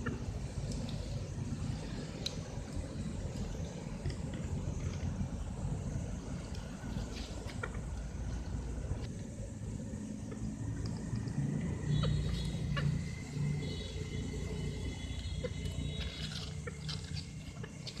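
Steady low outdoor background rumble with scattered faint clicks; a thin, steady high tone joins about two-thirds of the way through.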